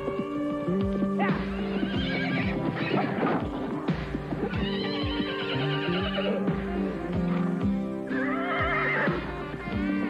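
Music with horses whinnying three times and hooves clip-clopping.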